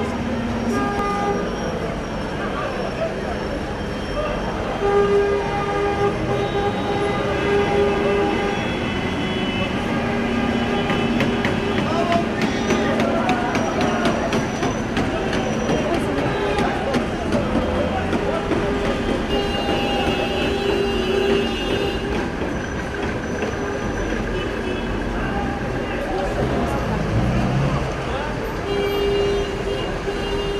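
Vehicle horns sounding in long held blasts, several overlapping or following one another, over the steady chatter and noise of a crowd.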